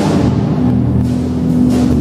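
Jazz piano trio playing live: stage keyboard, electric bass guitar and drum kit, with held chords over the bass. A cymbal wash dies away about half a second in.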